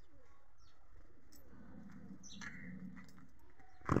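Faint bird calls: a few short, high chirps.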